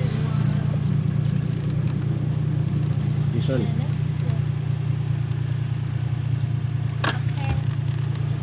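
Tuk tuk's engine running under way as a steady low drone, heard from inside the open passenger cabin. A brief voice comes about halfway through, and a sharp click about a second before the end.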